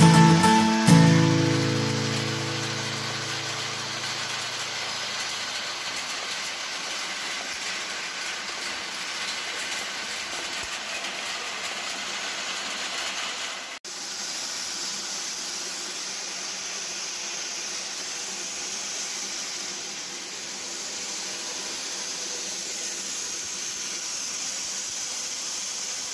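An acoustic guitar chord rings out and fades over the first few seconds. Then comes the steady, even whirring rattle of an arecanut dehusking machine running. The sound cuts off abruptly near the middle and resumes as a higher, hissier run of the same machine.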